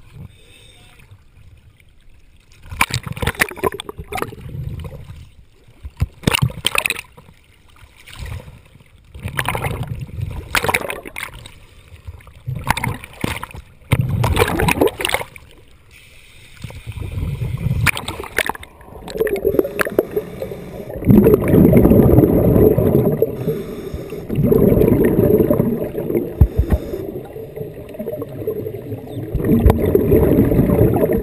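Sea water splashing and sloshing against a GoPro's waterproof housing in choppy surface waves, in bursts of about a second each. From about two-thirds of the way in it gives way to a steady, muffled bubbling gurgle as the camera goes under water.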